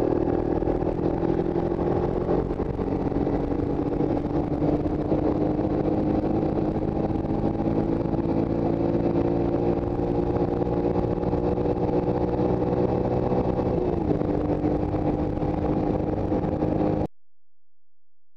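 Honda ATC all-terrain vehicle engine running at a steady speed while riding across the ice, its pitch dropping briefly about three quarters of the way through. The sound cuts off suddenly just before the end.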